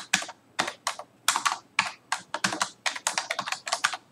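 Typing on a computer keyboard: a quick, irregular run of keystrokes with short pauses between groups, as a name is typed into a text field.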